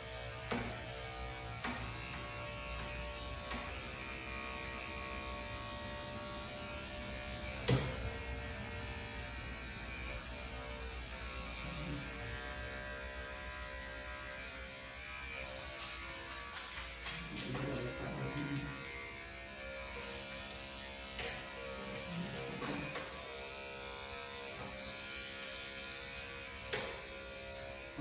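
Electric dog-grooming clippers running steadily as they shave tight mats out of a dog's belly fur, with a few sharp clicks along the way.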